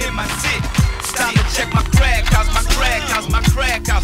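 Hip hop track: a rapped vocal over a beat of deep kick drums that drop in pitch, with steady hi-hats.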